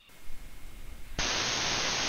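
Radio static from a software-defined radio's AM airband audio. A quieter, uneven hiss runs for about a second, then a loud, steady hiss cuts in abruptly as an air traffic transmission comes up on the channel.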